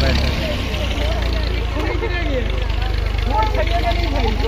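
Diesel tractor engine idling with a steady low rumble just after being started, with men's voices over it.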